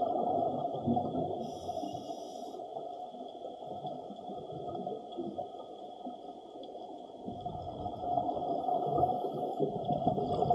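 Muffled rushing and gurgling of water, uneven, dipping in the middle and swelling louder near the end.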